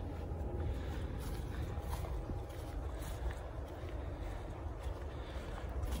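Wind buffeting the microphone outdoors: a low, irregular rumble with faint hiss above it.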